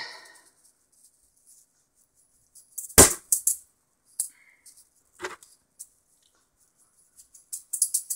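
Juggling balls clacking and knocking together in the hands as they are shuffled and gathered for a throw: one loud knock about three seconds in, a few lighter clicks after it, and a quick run of clicks near the end as the juggling starts.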